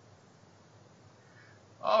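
Near silence: faint steady hiss during a pause in conversation, then a man starts talking near the end.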